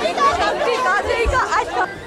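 Several people talking and calling out at once close by, an excited overlapping chatter of voices that cuts off just before the end.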